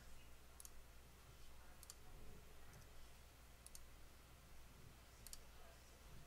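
A few faint computer mouse clicks, some in quick pairs, spread over near-silent room tone.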